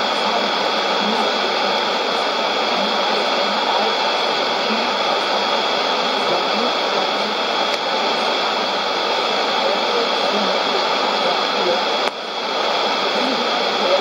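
Sony ICF-2001D shortwave receiver on 11530 kHz AM giving out steady loud static, with a weak voice from the WRMI relay barely showing through and a faint steady whistle. The noise dips briefly about twelve seconds in.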